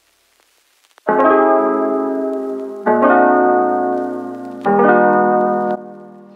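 Background piano music: after a near-silent first second, sustained chords are struck about every two seconds, each slowly fading.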